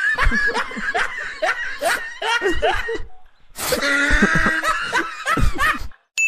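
Laughter in two bouts of short bursts, with a brief pause about halfway through.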